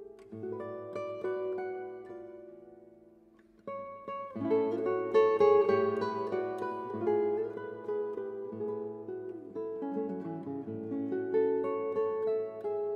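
Solo classical guitar with nylon strings, fingerpicked melody over bass notes. About three seconds in a chord rings and fades almost to silence, then the playing comes back louder and fuller.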